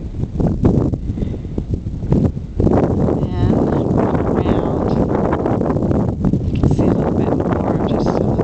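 Wind buffeting an outdoor camcorder microphone, a rough low rumble that grows louder about two and a half seconds in.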